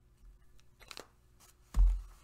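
A packaged coffee bag rustling faintly with a few small clicks as it is lowered, then one dull thump near the end as it is set down on the table.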